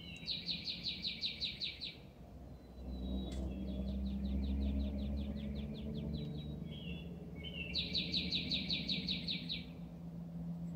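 A songbird singing a fast trill of about nine notes a second, each lasting about two seconds and led in by a short lower note. It sings loudly near the start and again near the end, with a fainter trill between, over a low steady rumble that swells in the middle.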